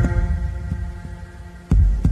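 Soundtrack music: a deep, heartbeat-like bass thump with softer low pulses between. One strong thump lands near the end.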